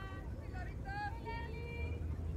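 Distant voices calling out across a softball field, with one drawn-out call near the end, over a steady low rumble.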